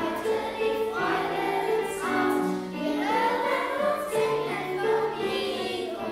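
A children's choir singing a German Christmas song, with steady low notes held underneath the voices.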